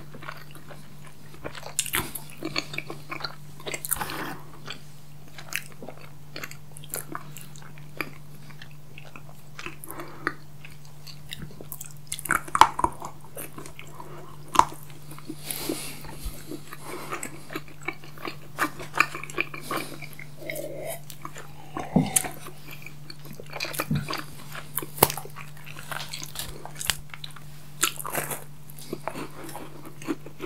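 Close-miked chewing and biting of chocolate candy bars and cake: wet mouth sounds with scattered sharp crunches, loudest about halfway through and again near the end. A steady low hum runs underneath.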